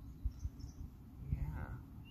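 A soft, brief murmured voice about halfway through, over a steady low rumble on the microphone, with a couple of faint high chirps near the start.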